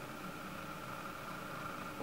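Quiet room tone: a faint, steady hum and hiss with no distinct events.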